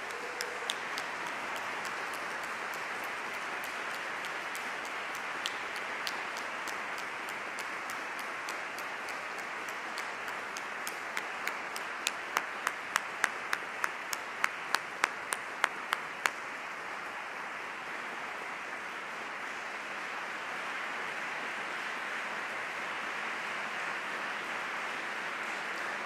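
Large audience applauding steadily. A single pair of hands claps close to the microphone at about three claps a second for a few seconds in the middle.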